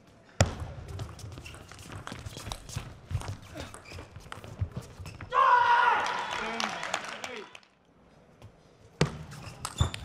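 Plastic table tennis ball clicking sharply and irregularly off the table and bats, a string of quick ticks over the first five seconds and again near the end. A voice rings out for about two seconds midway.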